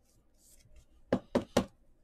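Three quick, sharp knocks about a quarter of a second apart, from a stack of trading cards being handled and knocked against a tabletop, after a faint rustle of cards.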